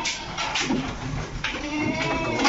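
Young Boer-cross goats bleating.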